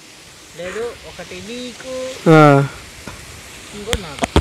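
Men's voices: quiet talk, then one short, louder vocal sound a little after two seconds in.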